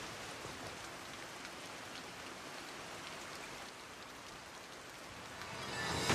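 Faint, steady hiss like light rain or background noise, with no distinct sounds in it; it grows slightly louder just before the end.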